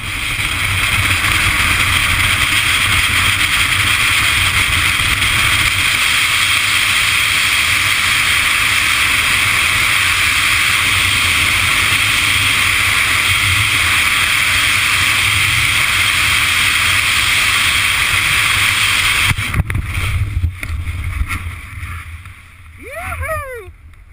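Loud, steady rush of airflow over a helmet-camera microphone during a BASE jump freefall. It builds up in the first second as the jumper gains speed. About 19 seconds in it turns ragged and drops away as the parachute is deployed and opens.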